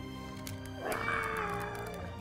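A dinosaur roar from toy-dinosaur play, about a second long, starting about a second in and falling slightly in pitch, over background music.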